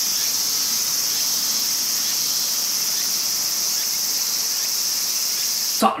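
Chorus of singing insects: a steady high-pitched drone that holds at one level throughout, stopping abruptly near the end.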